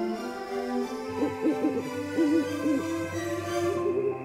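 Background music with an owl hooting over it: a run of short hoots that rise and fall in pitch, starting about a second in.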